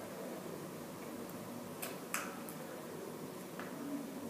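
Quiet room tone with a steady faint hiss, broken by a few small sharp clicks around the middle, two of them close together.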